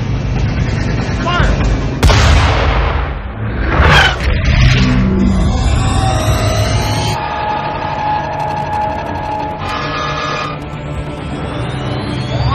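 Movie soundtrack of music and sci-fi sound effects for a giant alien vessel surfacing from the sea: a sudden loud boom about two seconds in, another surge near four seconds, then held droning tones and a rising whine near the end.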